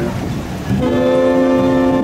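Jazz big band playing outdoors: after a brief dip, the horn section comes in about three-quarters of a second in on a long held chord over bass and drums.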